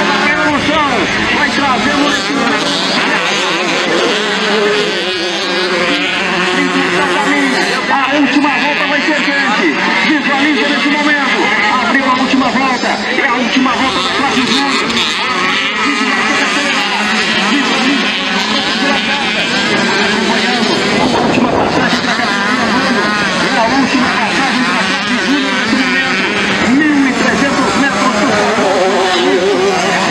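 Several small two-stroke motocross bikes racing on a dirt track, their engines revving up and down so that the pitch wavers constantly as they go through the corners.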